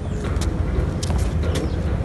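Steady low rumble of wind on the microphone, with a few light knocks from a tennis ball bouncing on the hard court after being hit.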